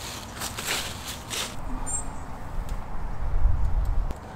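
Footsteps swishing through long grass and fallen leaves, a few rustling strides in the first second and a half. A low rumble of wind on the microphone builds toward the end.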